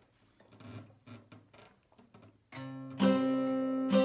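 Acoustic guitar: after a quiet start with faint small ticks, a chord is played about two and a half seconds in and then strummed louder half a second later, ringing on. These are the opening chords of a song.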